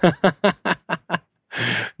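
Male laughter: a quick run of short bursts, about seven a second, then a longer breath of laughter near the end.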